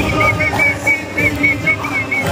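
A quick run of about nine short, high whistled notes, each rising and falling, over live band music.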